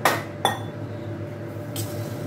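A spatula knocks twice against a steel cooking pot, right at the start and again about half a second later, each knock ringing briefly, followed by a lighter scrape near the end. A steady hum runs underneath.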